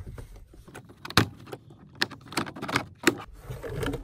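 Plastic pillar trim panel being pulled away from the pillar and off its retaining clips: several sharp snaps and clicks, the loudest a little over a second in, with plastic scraping and rustling between them.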